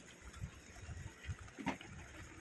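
Grated potato and coffee water boiling in an iron pan, a faint, irregular low bubbling.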